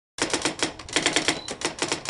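A rapid run of sharp clicks, about eight a second, with brief pauses in the run.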